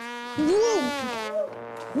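Trombone blown in a long, buzzy held note that steps down to a lower note for the last half second, with a short exclamation over it.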